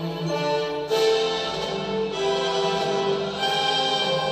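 Orchestral music with strings, sustained and swelling to a fuller, brighter sound about a second in.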